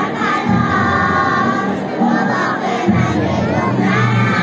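A group of young girls singing together over a recorded backing track with a low bass line.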